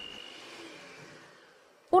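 Moulinex electric hand mixer beating eggs and yogurt in a stainless steel bowl at medium-high speed: motor noise with a steady high whine that stops about half a second in, the rest fading away to near silence.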